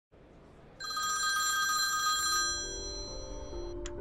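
A telephone ringing with a warbling electronic ring, starting about a second in and lasting about a second and a half. The ring fades out into music with sustained low notes.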